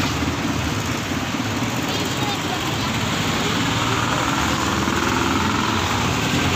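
Street traffic: vehicle engines running steadily close by, with a low engine drone.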